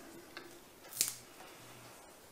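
Fresh dill stems being pinched and snapped by hand: a faint click about a third of a second in, then a sharper snap about a second in.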